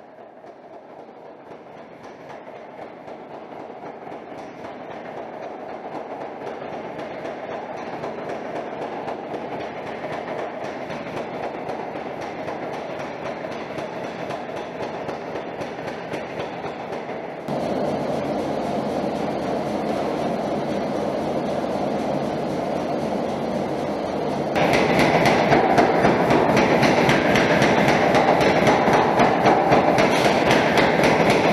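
Mechanical power hammer running with a fast, steady run of blows, growing louder and jumping up in level twice, about two-thirds of the way through and again near the end.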